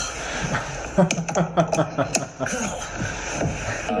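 Music with voices over it, broken by a few sharp clicks.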